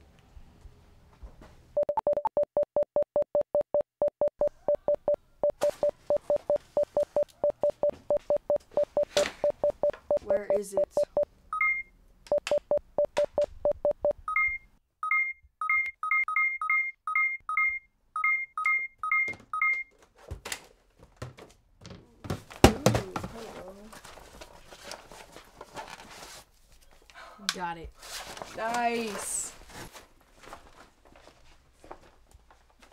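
Electronic keypad beeping: a rapid run of identical warning beeps at about four a second, with a short break, then a dozen or so two-tone key presses as a code is punched in. A single sharp knock follows, the loudest sound.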